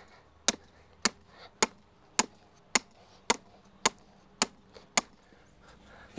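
A hammer striking the top of a 3/8-inch steel rebar stake, driving it down into the ground: ten sharp metallic strikes at an even pace of about two a second, stopping about five seconds in.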